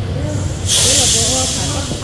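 A loud hiss lasting about a second, starting partway in, over background chatter of several voices.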